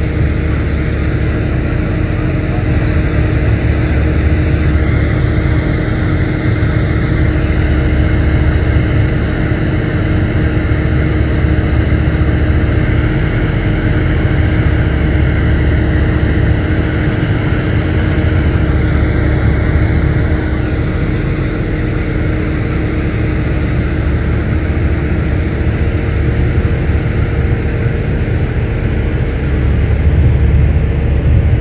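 Steady low engine rumble with a faint steady hum, growing slightly louder near the end.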